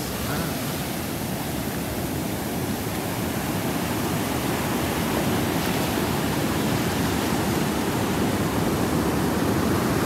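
Shallow surf washing over the sand: a steady rush of foaming water that slowly grows louder.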